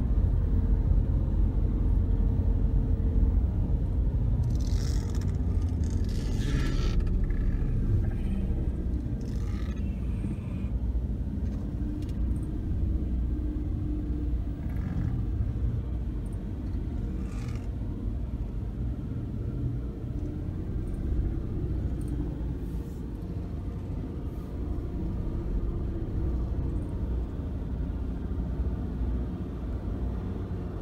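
Mazda 2 engine and tyre rumble heard from inside the cabin as the car creeps along at low speed, a steady low drone with a few short hisses over it in the first twenty seconds.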